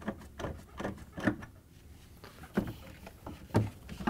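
Quarter-inch nut driver backing out the screws that hold an ice maker in a freezer: a few light clicks and knocks of the tool and screws against the plastic mounting brackets.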